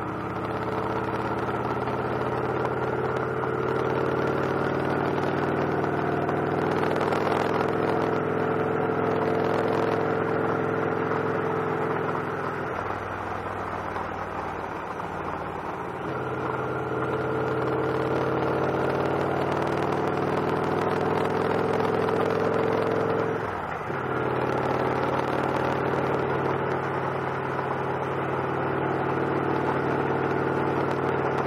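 Victory Cross Roads motorcycle's V-twin engine running at a steady cruising pace. The engine note falls away for a few seconds around the middle, then comes back. It dips briefly again about three-quarters of the way in.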